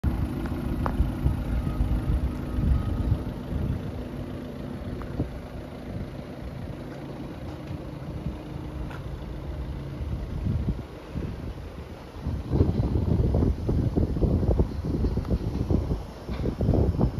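Wind buffeting the microphone outdoors, over a steady low hum for the first ten seconds, with heavier gusts from about twelve seconds in.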